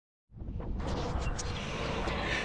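Outdoor ambience on an action camera's microphone: a steady low rumble and hiss that comes in a moment after a brief silence, with a few faint clicks.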